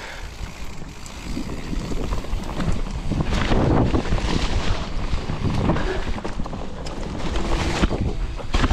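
Mountain bike descending a dirt trail: wind rushing over the camera microphone and tyres rumbling over the leaf-covered ground, growing louder over the first couple of seconds as speed builds, with irregular knocks and rattles from bumps.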